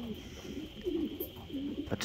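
Racing pigeons cooing: a series of short, low, warbling coos from the loft. This is cock birds courting the hens.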